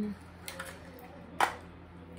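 Small hard clicks as a lipstick is taken from its packaging: a faint one about half a second in and a sharper one about a second and a half in.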